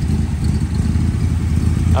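1966 Corvette's 396 big-block V8 idling steadily with a low rumble through its side-mounted exhaust pipes.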